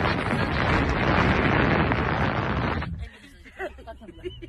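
Wind buffeting the phone's microphone held out through the sunroof of a moving car: a loud rushing noise that cuts off suddenly about three seconds in.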